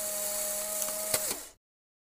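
Mechanical whirring sound effect for a product animation: a steady hum over a hiss, with a sharp click just over a second in, ending abruptly about a second and a half in.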